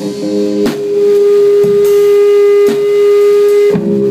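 Band playing metal: an electric guitar holds one long note for about three seconds, after a short chord, while the drum kit marks it with a few single hits about a second apart.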